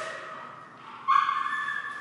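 A dog gives one sudden high-pitched call about a second in, held at a steady pitch for just under a second.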